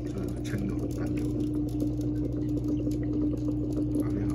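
Aquarium pump humming steadily, with water bubbling and faint irregular ticks.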